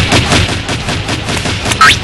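A rapid, even string of sharp cracks like gunfire, about eight a second, with a short rising whistle near the end.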